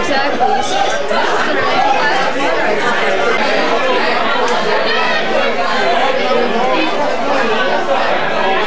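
Crowd chatter: many voices talking over one another in a bar room, with no one voice standing out.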